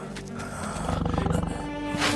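Cartoon tiger roaring: a rough growl that starts about half a second in and lasts about a second, over background music.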